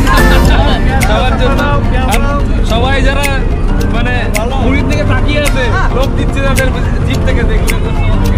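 Inside a moving bus: the engine's low rumble under passengers' voices, with music with a steady beat playing over them.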